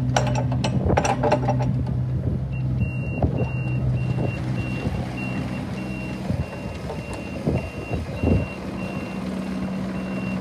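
Kubota U25 mini-excavator's diesel engine running as the machine tracks across gravel. A few rattling knocks come in the first two seconds. From about two and a half seconds in, a warning alarm beeps in a steady string.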